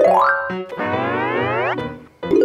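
Cartoon sound effects over children's background music: a quick upward pitch sweep right at the start, then a longer sweep that climbs faster and faster to a high pitch just before the end.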